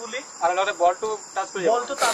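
A steady, high-pitched chorus of crickets, with a person's voice talking over it in quick, short phrases.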